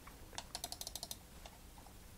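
A quick run of about a dozen faint clicks from a computer keyboard, most of them packed into under a second.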